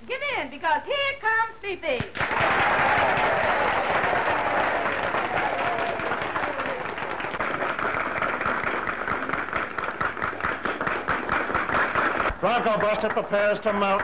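A voice for the first two seconds, then an audience applauding for about ten seconds, a steady spatter of clapping hands; a voice comes back in near the end.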